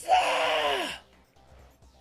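A man's breathy, wordless vocal exclamation, falling in pitch and lasting about a second.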